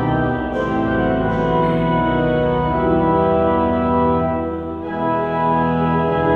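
Organ playing a hymn in long, held chords that change every second or two, with a short break in the phrase a little before the end.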